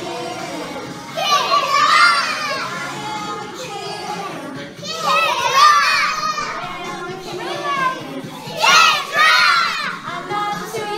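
A group of young children shouting and singing along in three loud bouts, with a song playing under them.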